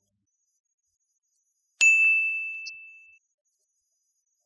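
A single bright ding: one struck, bell-like tone that rings and fades away over about a second and a half, an editing sound effect.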